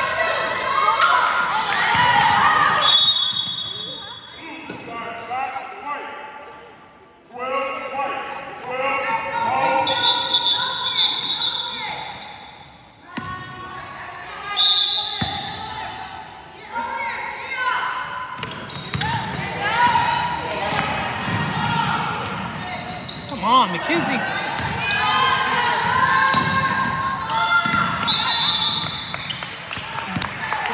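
Indoor basketball game on a hardwood court: a ball bouncing, players and spectators shouting and talking in a large echoing gym, and a few short, high referee's whistle blasts.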